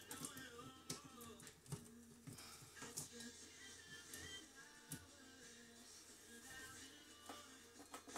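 Near silence: faint background music, with a few light clicks and taps as the blender's controls are pressed. The blender motor does not start.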